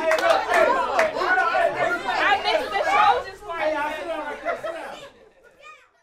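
A crowd of adults and children chattering at once in a room, many voices overlapping, fading out about five seconds in.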